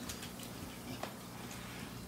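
Aquarium air bubbler and pump running: a faint steady hum and hiss, with one small click about a second in.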